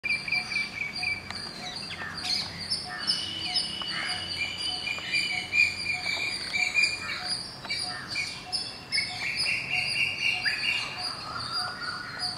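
Outdoor chorus of wild birds chirping and trilling, many calls overlapping, with insects chirping underneath and one short note repeated about twice a second throughout.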